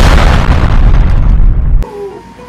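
Movie-style explosion sound effect of a planet blowing up: one loud, deep blast that rumbles on and cuts off suddenly near the end.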